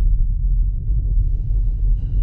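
Deep, steady rumbling drone from a logo sting's soundtrack, with a faint thin high tone coming in about halfway through.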